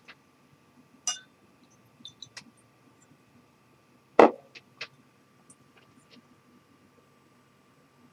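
Light clinks and taps of glassware as a little water is added to a whisky glass and the small water glass is set back down on a desk: one sharp clink about a second in, a few small ticks, then two quick knocks a little after the middle.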